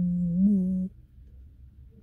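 A man's voice holding a long, low, hummed 'ohh' that lifts briefly in pitch about half a second in and breaks off just under a second in. A faint low rumble follows.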